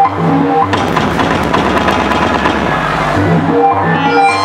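Techno DJ set played loud in a club: about a second in, the repeating bass pattern drops out into a dense, noisy wash over a deep rumble, and the beat pattern comes back near the end.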